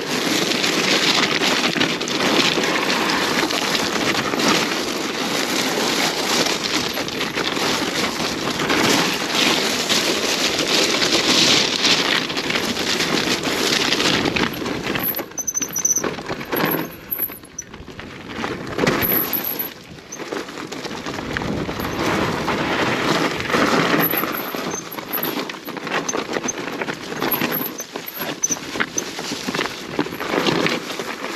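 Mountain-bike tyres crunching and rattling over loose scree and stones on a fast descent, with the bike's frame and parts clattering; it eases off for a few seconds just past the middle as the trail turns to softer dirt. A brief high squeal of the disc brakes comes about halfway through.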